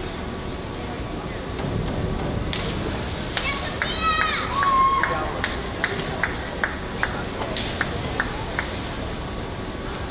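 Reverberant indoor pool-hall ambience: a steady wash of distant voices and hiss. A brief high-pitched call comes about four seconds in, followed by a scattered run of sharp knocks.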